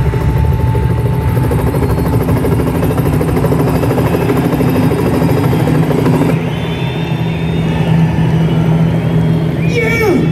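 Helicopter sound effect played loud over an arena PA: a steady, fast rotor chopping. A shouted voice comes over the speakers right at the end.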